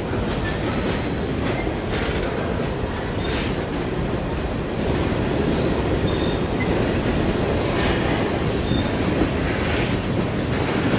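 Freight cars of a slow-moving CSX freight train rolling past at close range: a steady rumble of steel wheels on rail, with brief faint wheel squeals here and there.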